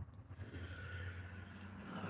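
Quiet pause: a faint, steady low hum with light handling noise and no distinct event.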